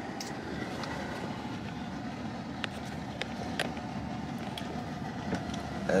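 Steady low hum inside a parked car with its engine idling, with a few faint ticks scattered through.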